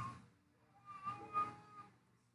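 The tail of a man's spoken words, then a faint, high-pitched voice calling out briefly about a second in, in two short pulses.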